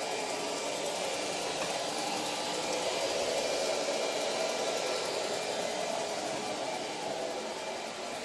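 Steady whooshing noise of a running household appliance, swelling slightly in the middle.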